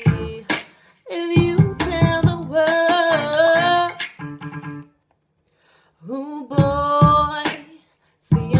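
A woman's vocals over a stop-start R&B backing track with beat hits and held, sliding sung notes. The music cuts out briefly about a second in and again for about a second past the middle before coming back in.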